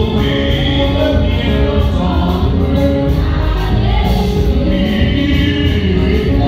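A church congregation singing a worship song together over loud, continuous amplified accompaniment with a heavy bass.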